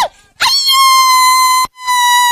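A loud, high-pitched wailing cry held in two long steady notes of about a second each, with a short break between them.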